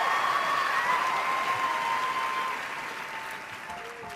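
Large theatre audience applauding and cheering, fading away over the last couple of seconds.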